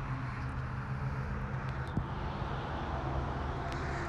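Steady low outdoor background rumble with a faint hum, and a faint click about two seconds in.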